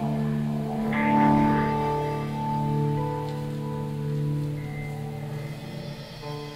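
Live band playing a slow instrumental passage of long, overlapping held notes with no drum beat; the sound swells brighter about a second in.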